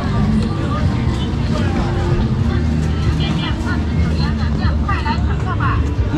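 Busy street-market hubbub: a babble of many voices over a steady low rumble of traffic and passing motor vehicles.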